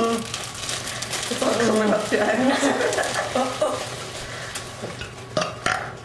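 A clear plastic bag crinkling and rustling as it is squeezed and sucked from, with muffled mumbling voices partway through and a few sharp clicks near the end.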